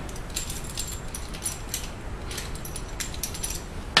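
Light, irregular metallic clicks and clinks as a Vise-Grip locking plier, its adjusting screw replaced by an eye bolt, is handled and set onto the rim of a steel drum.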